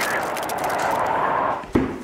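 Rushing, howling wind with a shifting pitch, the icy-blast sound laid over the opened door. It cuts off with a sharp knock near the end.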